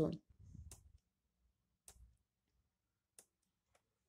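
About four faint, sharp clicks, irregularly spaced over near silence, typical of a computer mouse clicking through presentation slides.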